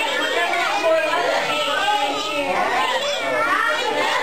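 A crowd of young children talking and calling out all at once, a steady babble of overlapping kids' voices.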